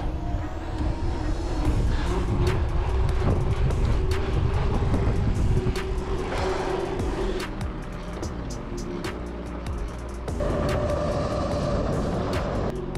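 Wind buffeting an action camera's microphone over the rolling noise of a mountain bike's knobby tyres on asphalt, with small rattles and clicks from the bike.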